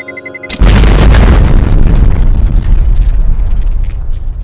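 Rapid high electronic beeping, then about half a second in a loud bomb explosion whose rumble slowly dies away.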